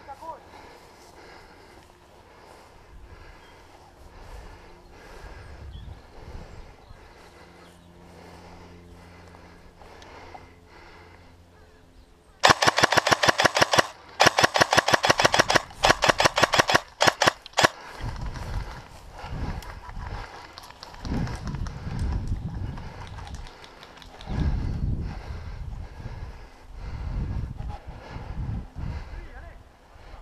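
Airsoft rifle firing several rapid full-auto bursts close to the microphone, a fast run of sharp clicks about twelve seconds in that lasts about five seconds with short breaks. Low irregular thumps of movement follow.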